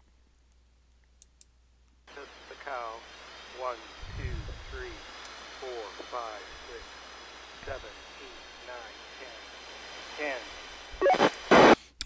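A man's voice received over an Icom IC-R20 scanner on the FRS band and played back from a recording, weak and under a steady radio hiss that starts about two seconds in. A loud short burst near the end.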